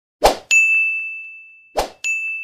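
End-screen sound effects for a subscribe-and-bell animation: a short swoosh, then a single high bell ding that rings on and fades away, and another swoosh near the end.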